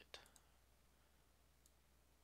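Near silence: room tone with a low steady hum. A computer mouse clicks once just after the start, and there is a fainter tick about a second and a half in.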